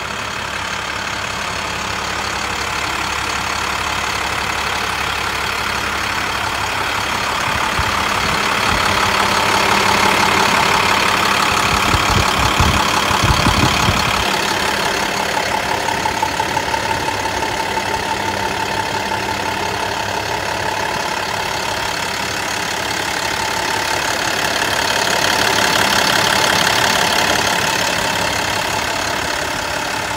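International DuraStar 4300's 7.6-litre inline-six diesel engine idling steadily, growing louder for a few seconds near the middle and again near the end.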